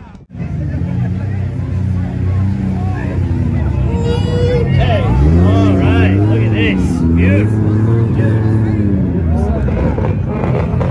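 Toyota Supra's 2JZ inline-six engine running loudly, its pitch rising and falling through the middle as it is revved, with crowd voices around it. The sound starts suddenly just after the start.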